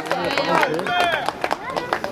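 Children's high-pitched shouts and calls with no clear words, and several sharp knocks among them.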